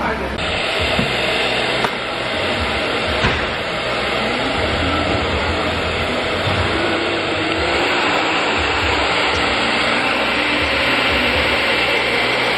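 Handheld hair dryer running steadily, a rush of air with a constant high motor whine; it comes on about half a second in.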